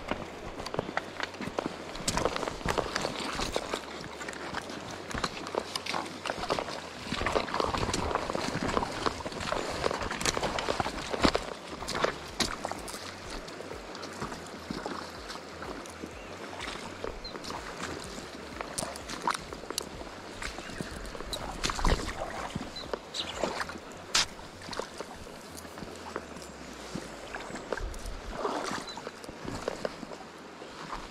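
Close handling of a plastic lure package, with many small crinkles and clicks, then fiddling as a lure is clipped onto the fishing line, over a steady rush of river water.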